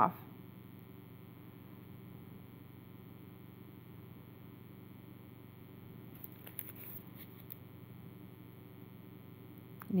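Quiet room tone with a steady low electrical hum. A few faint handling ticks and rustles come about six to seven and a half seconds in.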